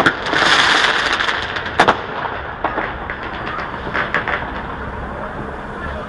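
Aerial fireworks bursting: a sharp bang at the start and another just before two seconds in, with crackling between them, then scattered pops and crackles thinning out.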